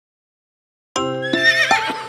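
Silence, then about a second in, a horse whinny sound effect with a wavering, falling pitch over the opening chords of a children's song.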